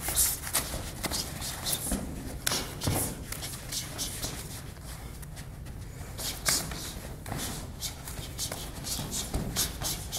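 Bare feet shuffling on a gym mat and cotton karate gi rustling and snapping during close-range full-contact sparring, with irregular short, sharp hits as punches land, the loudest about three seconds in and about six and a half seconds in.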